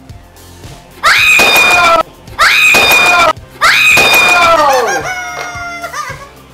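Comic sound effect laid over the collapse of a wooden block stacking tower: three loud falling wails, the third the longest and trailing off near the end.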